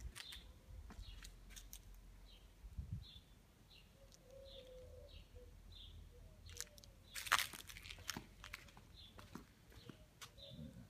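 A small bird chirping over and over, about two short high chirps a second, over faint crunching and rustling from the phone being handled and carried. There is one louder rustle a little past seven seconds in.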